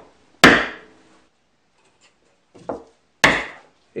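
Two sharp wooden knocks, about half a second in and again near the end, with a fainter knock just before the second: pieces of wood handled and set down on a workbench.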